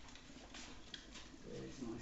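Quiet kitchen room tone with a faint click about a second in and a person's voice murmuring softly near the end.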